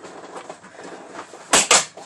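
Low room noise, then two quick, loud knocks close to the microphone about one and a half seconds in.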